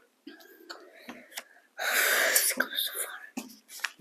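Whispered speech: a breathy, toneless whisper about two seconds in, the loudest sound here, between faint low sounds and a few short clicks.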